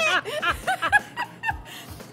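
A woman laughing, a run of quick chuckles that dies away about a second and a half in.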